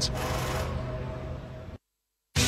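A steady low background hum with a faint higher tone, fading down and then cut off to dead silence just before the end.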